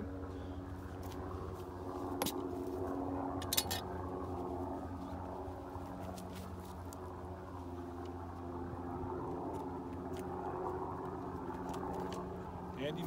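A steady low drone of a distant engine, with a couple of faint clicks about two and three and a half seconds in.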